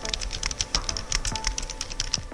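Rapid typing clicks, about ten a second, over background music with sustained notes.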